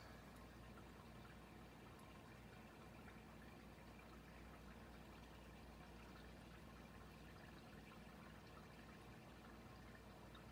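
Faint, steady sizzling and bubbling of battered potato wedges deep-frying in a pot of hot oil.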